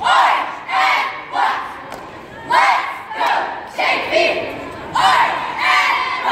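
A cheerleading squad shouting a cheer in unison: loud yelled phrases repeating in a steady rhythm, about one to two shouts a second.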